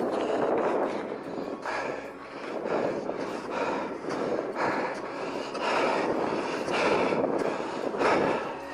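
Wind buffeting a camera's microphone: an uneven rushing noise that rises and falls.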